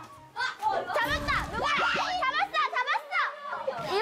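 Several young women shrieking, laughing and shouting over one another during a boisterous game, with a low thud about a second in.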